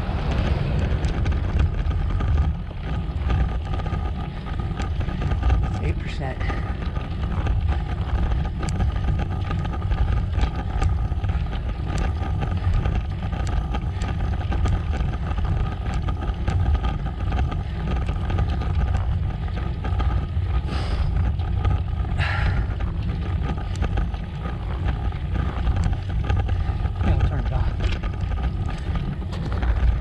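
Wind rushing over the microphone of a camera on a road bike going downhill, a loud steady rumble with a faint steady whine running through it. Two brief higher-pitched sounds come about two-thirds of the way in.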